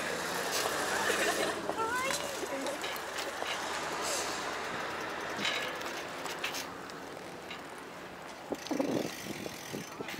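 Steady wind and tyre noise from a bicycle rolling over asphalt, with scattered small clicks and rattles.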